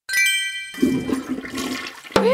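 Cartoon sound effects: a short sparkling chime, then a toilet flushing.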